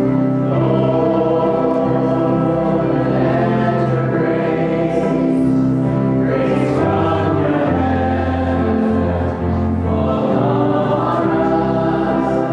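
Congregation singing a hymn together, led by a small worship band with keyboard and guitar. Long held notes move slowly from chord to chord over a steady bass.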